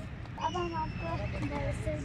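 Children's voices talking briefly, high-pitched and starting about half a second in, over a steady low rumble.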